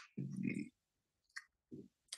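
A man's brief, soft murmur during a pause in his speech, then a single faint mouth click about a second and a half in.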